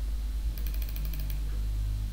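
Computer keyboard typing: a quick run of about ten keystrokes starting about half a second in and lasting about a second, over a steady low hum.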